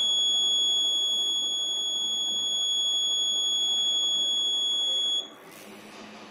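Electronic alarm buzzer on an accident-detection circuit board sounding one continuous high-pitched tone, the accident alert, which cuts off suddenly about five seconds in as the system resets to normal.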